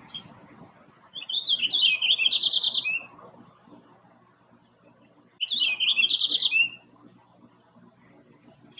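Male purple finch singing: two rapid, warbling song phrases of quick varied notes, the first starting about a second in and lasting about two seconds, the second about five seconds in and lasting about a second and a half.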